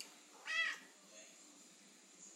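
A domestic cat meows once, a single short meow about half a second in.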